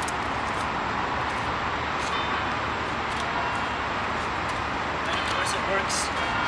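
Steady outdoor city background noise: a constant hum of road traffic, with a few faint voices near the end.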